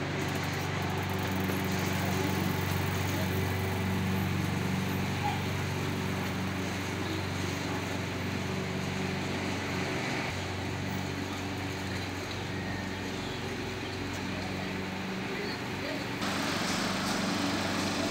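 A steady low mechanical hum over outdoor street noise; the background noise gets brighter and hissier near the end.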